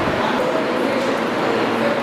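Indistinct speech: a woman's voice addressing a room, echoing and unclear, over a steady hiss.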